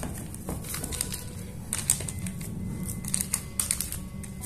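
Hands patting and pressing a dense, seedy dough into a parchment-lined loaf pan, with the paper crinkling: a scatter of small, irregular taps and clicks.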